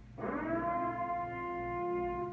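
Emergency broadcast siren sounding a long, horn-like wail: the blast swoops quickly up in pitch about a quarter second in, then holds steady. It is one of a series of repeating blasts.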